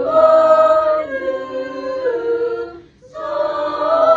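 Small choir singing a cappella in sustained held chords, moving to a new chord about a second in and again about two seconds in. It breaks off briefly just before three seconds in, a breath pause, then comes back in on a new held chord.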